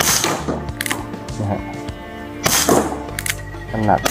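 Umarex Western Cowboy CO2 BB revolver firing two sharp shots about two and a half seconds apart, over background music.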